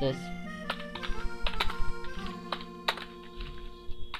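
Computer keyboard typing: a run of irregular, sharp key clicks as a short line of code is typed, over background music with steady held tones.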